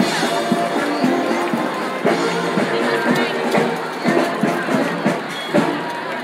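Live parade band music: several held notes played together over a steady run of drum beats, with crowd chatter underneath.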